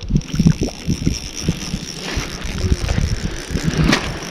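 Irregular rumbling and rustling on a body-worn camera's microphone, from wind and clothing brushing it as the angler's arms work the rod to bring a perch up through the ice hole.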